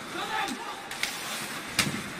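Ice hockey rink sounds: skates and sticks on the ice, a brief faint voice, then a sharp knock near the end as a player is bumped along the boards.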